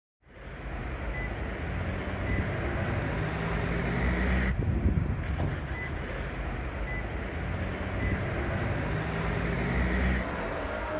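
City street traffic noise: a steady low hum of road vehicles that fades in at the start, with one vehicle passing close about halfway through.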